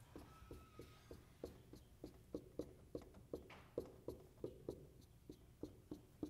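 Marker on a whiteboard: short, faint tapping strokes about three a second as small signs are drawn one after another inside circles.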